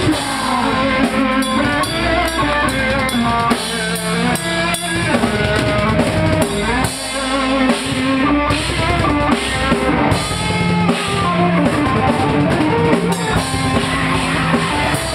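A live band playing loud, driving music on drum kit and electric guitars, with steady drum hits throughout. No vocals are heard in this stretch.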